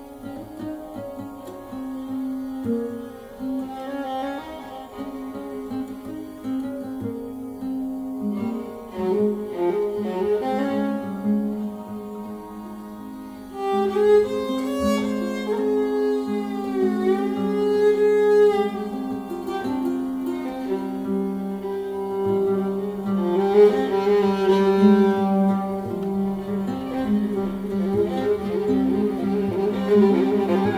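Viola and oud playing a duet: the viola holds long bowed notes over the plucked oud. About fourteen seconds in the music grows louder, and a note slides down and back up.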